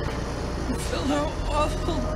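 A film clip with a man's voice speaking quietly over the steady low rumble of a car engine, as heard inside a moving car.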